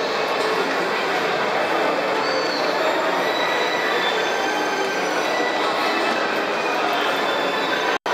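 Steady running noise of a carousel turning, with voices of other riders mixed in.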